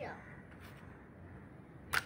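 Small plastic toy shovel digging in damp soil: mostly quiet, with one sharp knock near the end.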